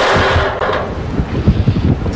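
Lottery ball-draw machine running: a steady rushing noise, then from about a second in irregular knocking and clatter of the numbered balls tumbling inside it.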